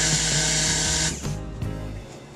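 Handheld stick blender running in soap batter in a stainless steel pitcher, blending oils and lye toward trace; it stops about a second in.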